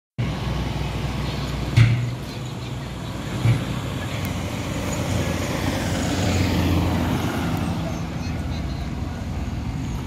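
Steady low engine hum and road rumble of a moving car, heard from inside it, with two sharp knocks about two and three and a half seconds in.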